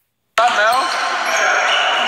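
Pickup basketball in a large echoing gym: a basketball bouncing on the hardwood floor amid players' shouts. It starts with a split second of dead silence, which is cut off by a click.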